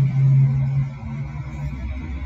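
Background music: a steady low note that fades about a second in, over a low rumble.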